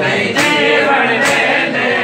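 Men chanting a mourning refrain (noha) in unison, with rhythmic chest-beating (matam): a hand strike on the chest about every second, in time with the chant.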